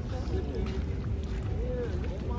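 Steady low rumble of wind buffeting the phone's microphone, with indistinct voices talking nearby.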